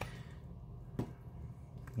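A fossil dig-kit block broken apart by hand, with faint crumbling and one sharp crack about a second in as the block snaps.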